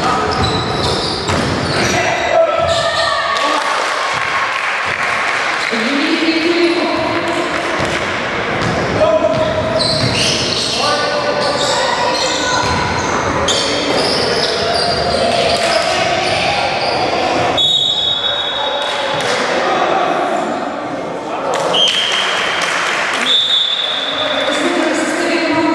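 Indoor basketball game: the ball bouncing on a wooden gym floor and players' voices calling out, echoing in a large hall. Near the end there are short, steady, high blasts of a referee's whistle.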